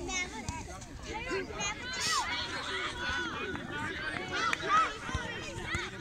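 Distant, high-pitched children's voices calling and chattering across an open playing field, overlapping with other voices.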